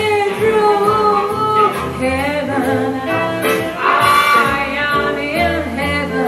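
A woman singing jazz into a microphone over nylon-string guitar accompaniment, holding long notes that slide up and down in pitch.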